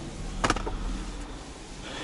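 Handling noise: one sharp click about half a second in, then soft rustling over a low rumble.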